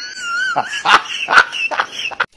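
A man's high-pitched, squealing laugh, wavering up and down in pitch and broken by several sharp gasping bursts.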